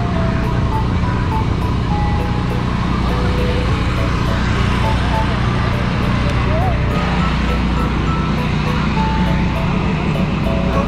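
Portable generator running with a steady low drone, under voices and snatches of music.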